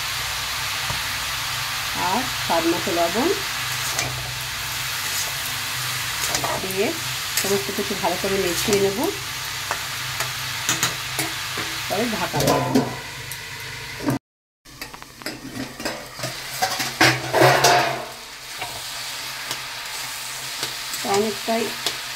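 Chopped ash gourd frying in hot oil in a metal kadai, sizzling steadily, while a metal spatula scrapes and stirs against the pan in repeated bursts. The sound drops out for a moment a little past the middle, and the stirring is loudest just after that.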